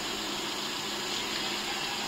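Steady, even background noise of an outdoor roadside at night, distant traffic and people, with a faint low hum underneath.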